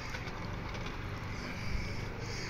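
Garden model train running along its outdoor track: a steady low motor hum with light, quick clicking of the wheels over the rail joints.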